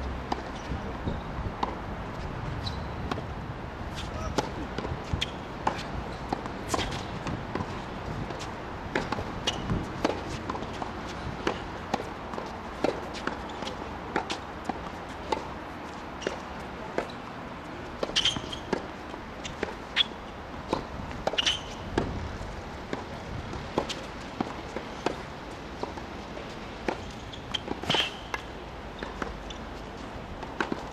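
Tennis balls struck by rackets and bouncing on a hard court during play: a string of sharp pops and thuds, with louder racket hits in the second half.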